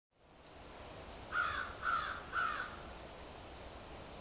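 A crow cawing three times in quick succession, each caw short and hoarse, over a faint steady hiss.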